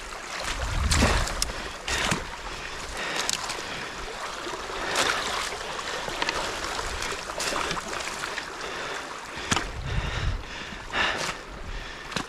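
Floodwater rushing over and through a beaver dam: a steady loud rush of water, with scattered short knocks and crackles of sticks and debris, and two brief low rumbles, about a second in and again near the end.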